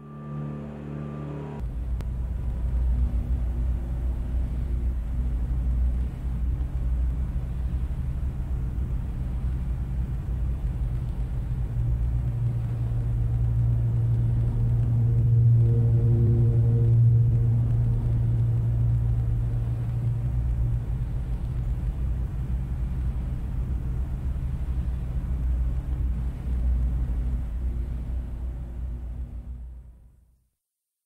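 Solo piano played deep in the bass register as a dense, sustained low rumble that swells towards the middle and stops abruptly at the end.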